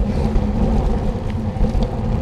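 Steady wind and road rumble on a handlebar-mounted camera's microphone as a bicycle rolls along wet pavement, with a faint steady hum.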